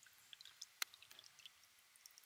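Faint trickling and dripping of spring water pouring from the open end of a metal pipe onto wet ground, with one sharper click a little under a second in.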